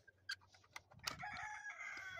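A rooster crowing: one long call starting about halfway in, falling slightly in pitch. Before it come a few light clicks as a brass barrel bolt on the wooden coop door is worked.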